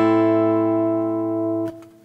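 A minor chord on guitar rings out steadily, slowly fading, and is damped suddenly near the end, leaving a faint tail.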